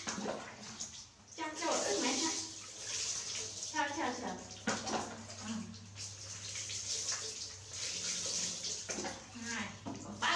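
Water poured from a plastic bowl, splashing over a small monkey and onto a tiled floor while it is bathed, with short voices breaking in now and then.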